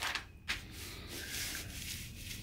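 Glossy paper page of a tool flyer being turned, a faint rustle with a short crinkle about half a second in.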